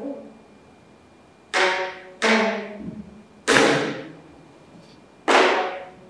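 Geomungo (Korean six-string zither) struck with a bamboo plectrum: four slow, widely spaced notes, each a sharp percussive attack that rings and fades before the next.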